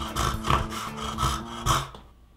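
Rhythmic scratchy rasping sound made of quick repeated strokes over a steady low hum, fading out near the end.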